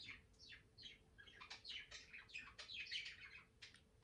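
A caged pet bird chirping faintly in a rapid series of short, downward-sliding chirps.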